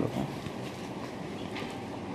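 A pause in speech filled by steady room background noise, an even hum and hiss, with one faint short hiss about one and a half seconds in.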